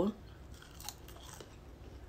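Quiet close-up chewing of a french fry, with a few faint soft clicks and crunches from the mouth.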